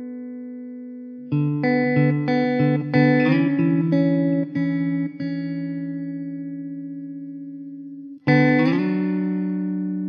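Background music on a plucked string instrument. Notes and chords start sharply and ring out slowly, with a quick run of notes in the first half and one more chord struck near the end.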